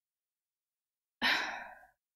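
A woman's sigh: one breathy exhale that starts a little over a second in and fades away in under a second.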